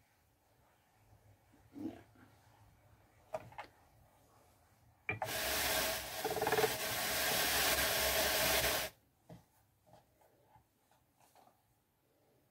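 Ashford drum carder being hand-cranked, its carding drums turning as merino fibre is fed in: a steady rushing noise for about four seconds, starting about five seconds in and stopping abruptly. Before it, a few soft knocks from handling the carder.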